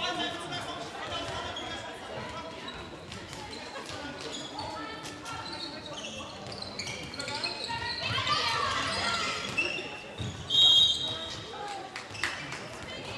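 A handball being bounced on a sports-hall floor amid players' and spectators' voices calling out, echoing in the large hall. About ten and a half seconds in there is a short, loud, high-pitched sound.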